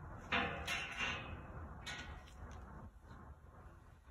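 Brief rustling and scraping from a paper-streamer airflow test stick held against a ceiling supply diffuser, its streamers fluttering in the air the diffuser is blowing, which shows that the damper on that run is open. A few bursts come in the first two seconds, over a low steady rumble.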